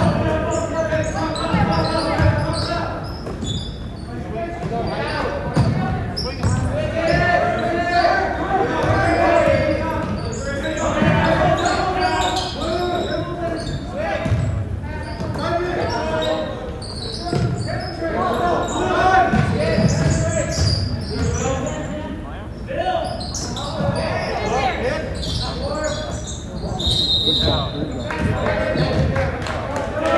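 Basketball being dribbled and bouncing on a hardwood gym floor during play, in the echo of a large gym, with people's voices talking throughout. A short whistle blast sounds near the end.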